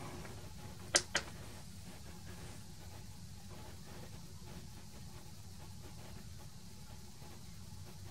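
Two quick clicks about a second in: the push-button on a DROK transistor tester pressed and released to power it up and start a test. After that only a faint, steady low hum.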